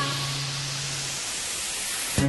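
A steady hiss of white noise used as a transition effect in a DJ dance remix, with a low held note from the music underneath that stops about a second in.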